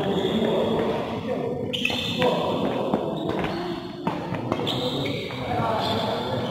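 Badminton rally: rackets strike the shuttlecock sharply a few times, with footsteps on the court, in an echoing hall. People's voices carry on underneath.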